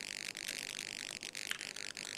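Low, steady hiss with a warbling, garbled texture on a video-call audio line, with a few faint clicks. It is typical of a line breaking up over an unstable internet connection.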